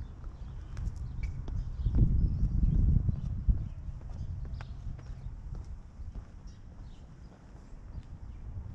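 Footsteps on stone steps and cobbled paving, sharp clicks about two a second, over a low rumble.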